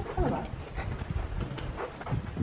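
Footsteps on a carpeted corridor with handheld-camera handling noise: irregular soft low thumps.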